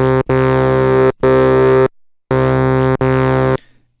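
u-he Diva software synthesizer playing a monophonic bass patch through its high-pass filter in Bite mode: the same low note held and replayed several times with short gaps, each note starting and stopping abruptly. The tone stays steady without any filter sweep, because the envelope meant to move the filter peak has no modulation depth yet.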